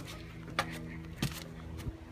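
Footsteps of a person walking: three soft thumps about two-thirds of a second apart.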